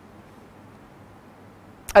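Quiet room tone with a faint hiss through the microphone during a pause in speech, then a sharp click just before the end as a man's voice starts speaking.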